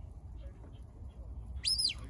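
A single short whistle near the end, rising and then falling in pitch: a sheepdog handler's whistle command to a border collie.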